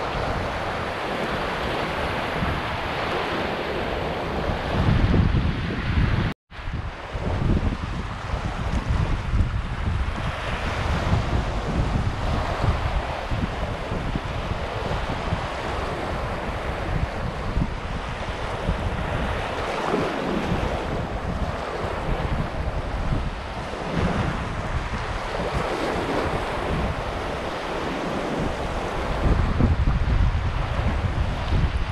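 Small Black Sea waves breaking and washing up a sandy beach, with wind buffeting the microphone. The sound cuts out for a moment about six seconds in.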